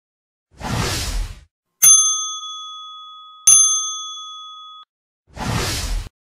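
Logo intro sound effect: a whoosh, then two bright bell-like dings about a second and a half apart, each ringing out and fading over more than a second, then another whoosh.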